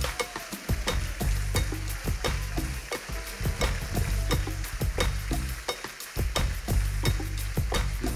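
Audience applauding: many hands clapping at once, with background music playing underneath.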